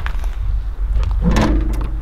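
Steady low outdoor rumble, with a brief hesitant voiced 'ähm' from a man just over a second in.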